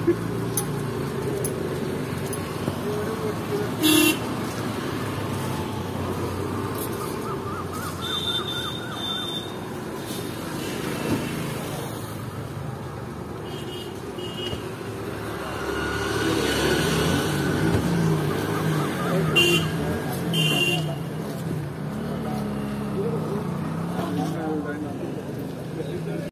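Street noise: indistinct voices and traffic rumble, with short vehicle horn toots several times. The loudest toot comes about four seconds in, and there is a pair of toots near the end.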